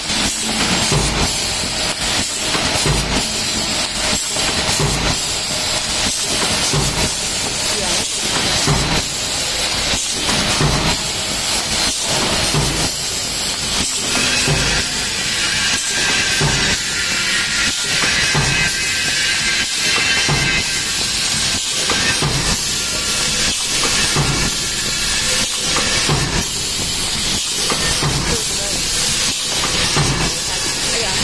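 JBZ-400 paper plate forming machine running: a steady mechanical clatter with a stroke about once a second as the molds press plates, over a continuous hiss of air.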